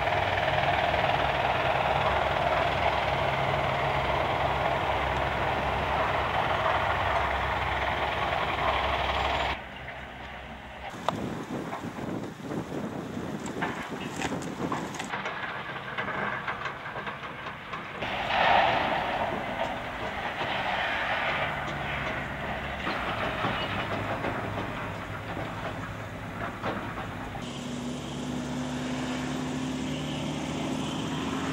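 Heavy machinery working at a rubble-crushing site: a steady mechanical rumble with clatter and hiss. It is loudest for the first ten seconds, then drops suddenly and goes on quieter and more uneven.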